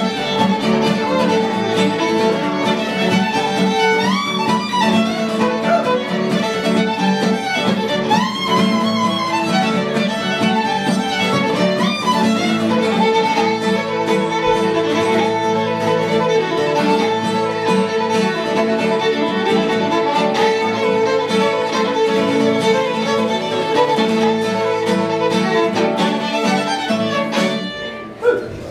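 Live fiddle and strummed acoustic guitar playing an instrumental tune, the fiddle leading with upward slides into notes about every four seconds early on. The tune ends just before the close.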